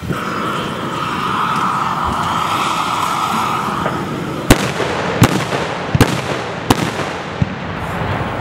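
A propane torch lance hisses steadily, then carbide cannons fire one after another: four loud bangs about three quarters of a second apart, then a smaller fifth bang. Each bang is acetylene from calcium carbide and water, touched off so that it blows the ball out of the barrel's mouth.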